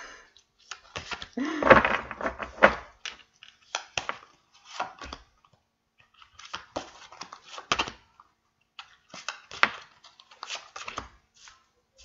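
Large tarot cards being handled and dealt face down onto a wooden table: irregular snaps, slides and taps of card on card and card on wood, loudest about two seconds in.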